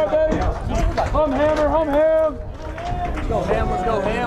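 Indistinct voices calling out and chattering between pitches, some calls drawn out, over a steady low rumble.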